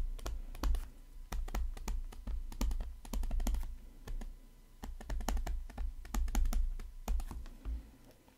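Pen stylus on a tablet screen while handwriting: a run of irregular light clicks and taps, several a second, as letters are written.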